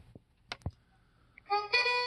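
A few short clicks of the Riptunes RACR-510BTS boombox's push buttons, then about one and a half seconds in, music starts playing through the boombox's speakers: a recording made on the boombox, played back from a USB drive.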